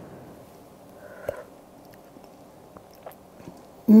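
A person tasting hot cocoa from a spoon: a short slurp with a small click about a second in, then faint mouth sounds.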